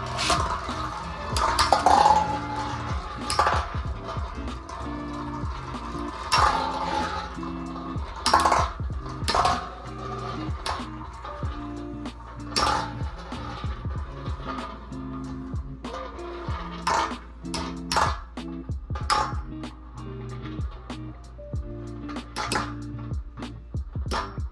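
Storm Pegasus and Burn Phoenix Beyblade spinning tops clashing in a hard, metal-like satellite dish stadium: repeated sharp metallic clinks scattered throughout, over background music with a steady beat.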